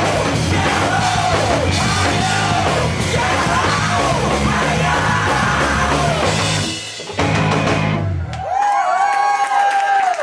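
Live rock band with shouted lead vocals, distorted electric guitars, bass and drums playing the end of a song. The band stops about eight and a half seconds in, leaving one long held yell.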